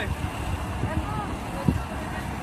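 Indistinct voices over steady outdoor background noise, with a low thump near the end.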